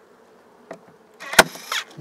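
Portable staple gun firing once, about a second and a half in: a brief mechanical whir around one sharp snap, with a small click shortly before. Underneath runs the steady hum of honey bees from the open hive.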